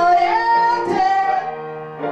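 A man sings a high sung phrase into a microphone over electric keyboard accompaniment. The voice slides up into a held note, steps to another note and eases off near the end.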